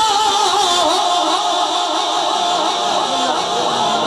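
Voices singing a naat, a long held note easing into wavering, overlapping vocal lines.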